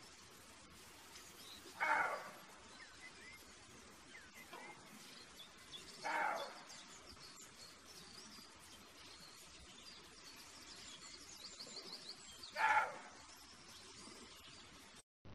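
Roe deer buck calling: three short calls a few seconds apart. Faint birdsong runs in the background.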